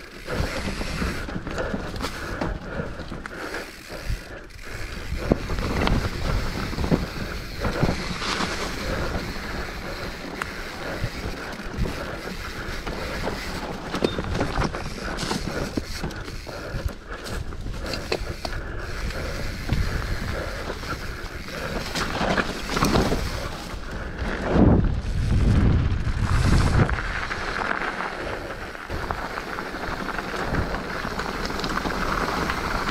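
Mountain bike descending a dirt forest trail at speed: steady tyre noise over dirt and leaves with wind rushing over the camera microphone, and rattles and knocks from the bike over bumps, heaviest a little over three quarters of the way through.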